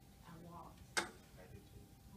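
A single sharp click about a second in, with faint talking in the room before it.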